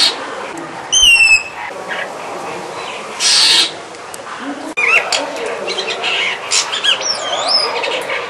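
Brahminy starling singing: a harsh rasping burst at the start and another about three seconds in, a quick run of high whistled slurred notes about a second in, then a busy string of varied chirps and looping whistles from about five seconds on.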